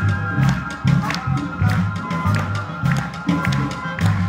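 A live school wind ensemble playing: an electric bass line of repeating low notes under held wind chords, with a steady beat of sharp percussion taps.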